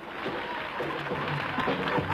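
Old, muffled archival television audio with everything above about 4 kHz missing: faint, indistinct voices with music underneath.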